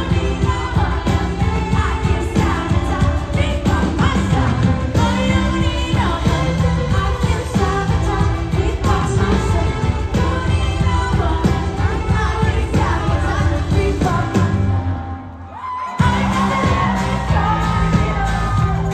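Live rock band with a female lead singer, drums and electric guitars, recorded from the audience. About 15 seconds in the music briefly drops away, then the full band comes back in abruptly.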